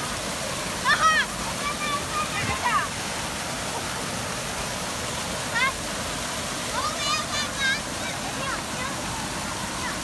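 Steady rush of water from pool fountain jets pouring down onto shallow water. Children's high shouts and squeals come over it several times, loudest about a second in.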